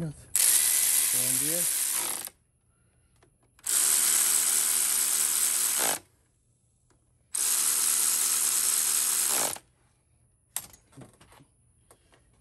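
Cordless electric ratchet running in three spells of about two seconds each, tightening the hose fittings on a power steering pump.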